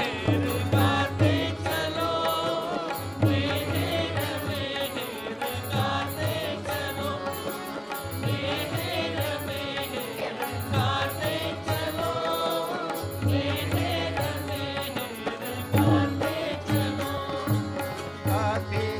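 Devotional chanting sung to a melody over a low drum beat, heard through a Zoom screen share of the live stream.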